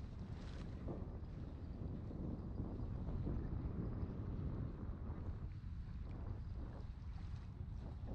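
Wind blowing across the camera's microphone, a steady low rumble.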